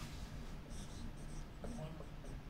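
Dry-erase marker squeaking and scratching across a whiteboard in several short strokes as symbols are written.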